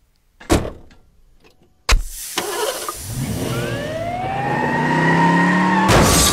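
Cartoon ambulance sound effects: a single sharp bang about half a second in, then from about two seconds a vehicle engine starting and revving hard, its pitch rising steadily as it speeds away just before a crash.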